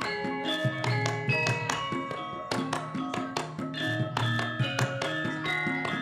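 Javanese gamelan playing, a dense, steady stream of struck bronze metallophone and gong notes ringing on, with frequent sharp taps throughout.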